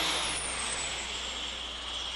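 Engine noise of a low-flying spray plane passing overhead, fading slowly, with a high whine that falls in pitch over the first second and a half.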